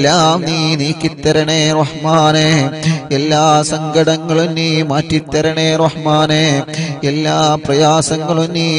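A man's voice chanting a supplication in a slow, melodic style, holding long wavering notes with short breaks between phrases, over a steady low hum.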